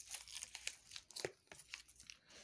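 Tarot cards being shuffled and handled: a quick run of crisp clicks and papery rustles as the stiff cards slide and snap against each other.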